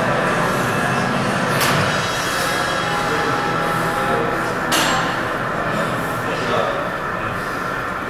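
Steady gym background noise with indistinct voices, broken by two sharp knocks, about two seconds and five seconds in.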